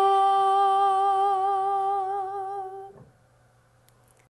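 A woman's voice singing on 'la', holding one long note with vibrato at the end of a sung phrase and dying away about three seconds in.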